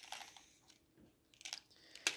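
Near silence: room tone, with a few faint short clicks near the start and about a second and a half in.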